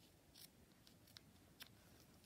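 Paper snips cutting a satin ribbon end: a faint snip about half a second in, then a couple of fainter clicks.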